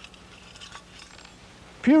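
Faint light clicks and clinks of small survival-kit items being handled on a tabletop, then a man starts speaking near the end.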